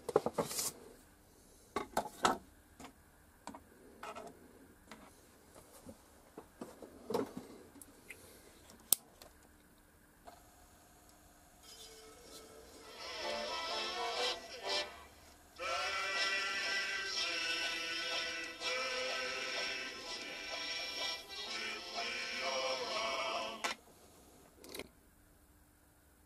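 Scattered clicks and knocks for the first dozen seconds. Then about 12 seconds in, music starts playing from a vinyl LP through the small built-in speaker of a suitcase-style record player, as a test of the just-refitted cartridge. The music gets louder about 15 seconds in as the volume is turned up, then cuts off shortly before the end.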